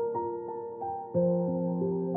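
Slow, calm piano music: single notes struck about every third of a second and left to ring, with a low bass note coming in a little past halfway.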